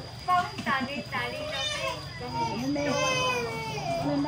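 People talking indoors, with high-pitched children's voices mixed in among the adults' speech.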